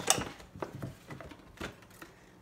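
Paper gift bag and tissue paper rustling and crinkling as a ceramic mug is lifted out, loudest right at the start, then a few softer crinkles that fade away near the end.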